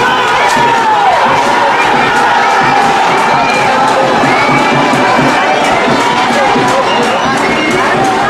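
Crowd of spectators cheering and shouting during a sprint relay, many voices yelling at once without a break.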